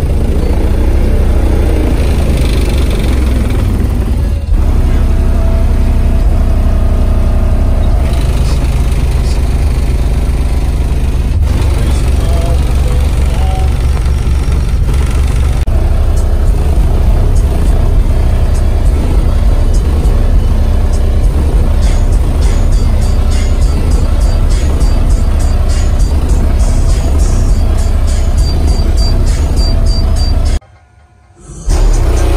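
A pair of 15-inch car-audio subwoofers playing bass-heavy music very loud, the cones driven hard. In the last third an even, quick ticking beat rides on top of the deep bass.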